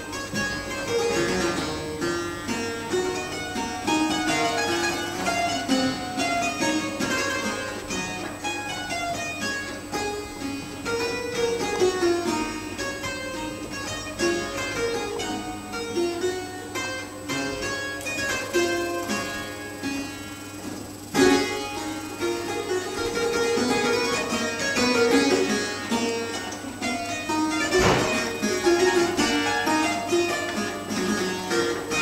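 Fretted clavichord played, a keyboard piece in a continuous stream of quick single notes, its metal tangents striking the strings. The playing breaks briefly about two-thirds of the way through, then picks up again.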